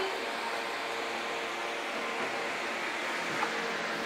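Steady whirring hum of a refrigeration fan unit, with a faint tick about three and a half seconds in.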